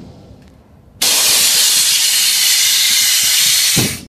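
Loud, steady hiss of escaping compressed air from a bottom-dump trailer's gate air system. It starts abruptly about a second in and drops away just before the end.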